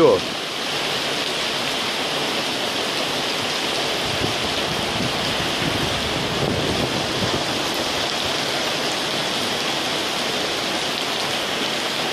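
Heavy rain from a summer squall pouring steadily onto a paved square, an even hiss without a break.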